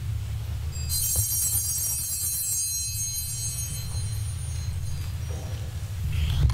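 A small, high-pitched bell rings once about a second in and fades away over a few seconds. A low steady hum runs underneath.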